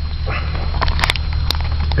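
Handling noise of a camera moved across body armor and gear inside a military vehicle: rustling with a few sharp clicks about a second in, over a steady low hum in the cab.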